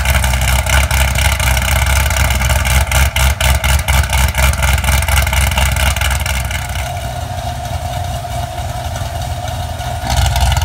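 LS7 V8 of a C6 Corvette Z06, fitted with headers, an X-pipe and a Mild to Wild muffler mod, idling loudly and unevenly just after a cold start. Over the last three seconds or so it settles to a quieter, steadier idle.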